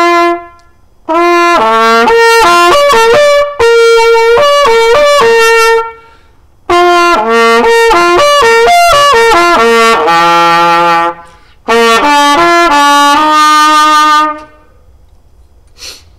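Jupiter XO 1602S silver-plated trumpet played solo: three phrases of moving notes with short breaths between, each ending on a held note, with a smooth, broad, warm tone.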